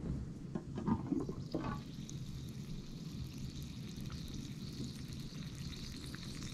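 A slow-cooker lid handled and lifted with a few light knocks, then the roast's cooking liquid bubbling steadily at a simmer inside the crock pot.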